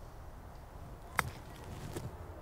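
A single crisp click of a golf club striking the ball on a chip shot off the grass, a little over a second in.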